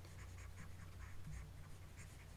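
Faint scratchy ticks and taps of a stylus moving over a pen tablet, over a low steady hum.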